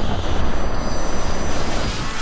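A loud, steady rushing and rumbling noise, a sound effect cut in abruptly after a moment of silence in the edited soundtrack. It eases slightly near the end as music comes back in.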